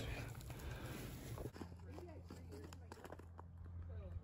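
Faint, muffled voices under a low rumble of wind or handling noise on the microphone, quietening about a second and a half in.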